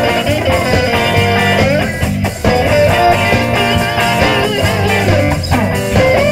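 Live blues band with electric guitars playing, a lead guitar line with sliding, bent notes over bass and drums.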